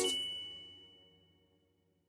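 The last chord of a short music jingle dying away, with a high, bell-like ding ringing on over it. It fades out within about a second.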